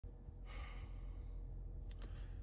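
A man's faint sigh, one breathy exhale about half a second in, followed by a short mouth click near the end.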